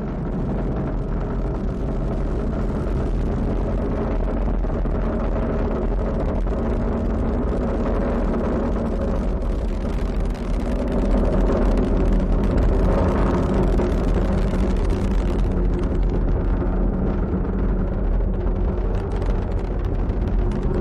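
Falcon 9 rocket's nine first-stage engines during ascent: a steady, deep rumble with crackle, growing slightly louder from about halfway through.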